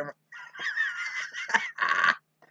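A man laughing hard: a high, wheezing laugh whose pitch wavers up and down, with a louder burst near the end.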